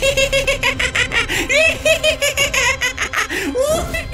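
A cartoon ghost laughing: one long, fast run of repeated "ha" sounds.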